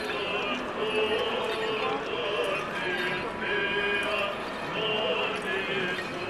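Men's voices chanting a Byzantine Orthodox hymn in held, wavering phrases over the noise of a dense crowd.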